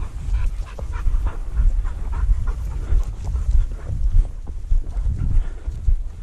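Yellow Labrador retriever panting hard and rhythmically close to the microphone, about two or three breaths a second, over a steady low rumble on the microphone.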